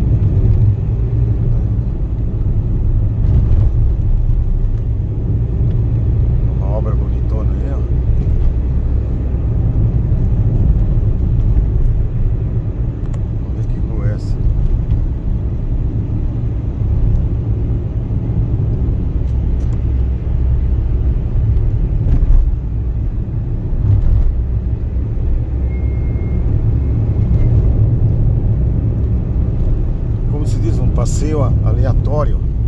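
A car driving on city streets, heard from inside the cabin: a steady low rumble of engine and tyres.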